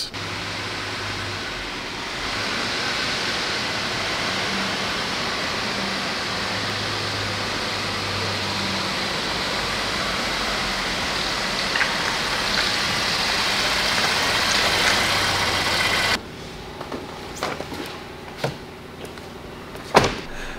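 Ford Transit van engine running as the van drives slowly into a large shop, under a loud, even rush of noise with a steady low hum. About sixteen seconds in the sound drops sharply, leaving a quieter hum with a few light clicks.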